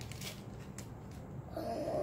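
Small plastic packet being pulled open by hand, with faint crinkling near the start. About one and a half seconds in, a child makes a short drawn-out breathy vocal sound.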